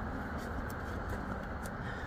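Steady low background noise with a few faint, light clicks.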